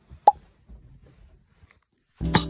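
A single short pop about a quarter of a second in, then faint low rustling, like a phone being handled.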